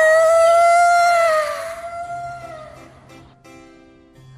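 A high, drawn-out vocal cry held on one long note for about two seconds, then fading. A few soft musical notes follow over a low hum.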